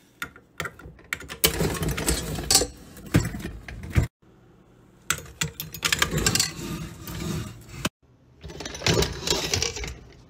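Electric hand mixer creaming butter, its beaters rattling and clattering against the mixing bowl. It comes in three stretches, each broken off suddenly.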